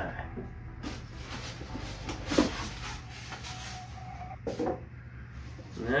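Cardboard box and packaging being handled during unpacking: rustling and light knocks, the loudest a sharp knock about two and a half seconds in.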